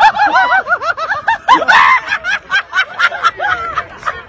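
High-pitched laughter: a rapid, continuous run of short 'ha' pulses, about six a second, which thins out near the end.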